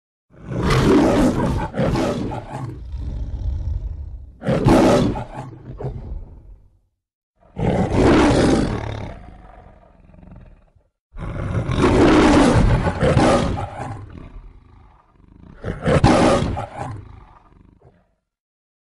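The MGM logo's lion, Leo, roaring: a string of deep lion roars and growls in three bouts, broken by brief silences about 7 and 11 seconds in.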